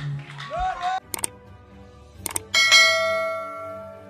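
Subscribe-button sound effect: two short clicks about a second apart, then a bright bell ding that rings on and fades away.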